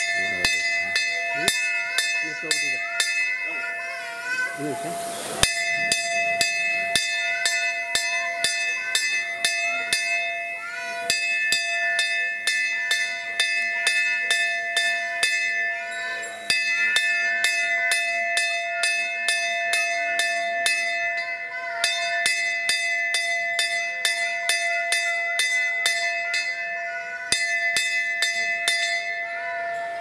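A hanging metal bell struck rapidly over and over, its ringing kept going without dying away, in runs that break off and start again about every five and a half seconds. Voices are heard under the ringing.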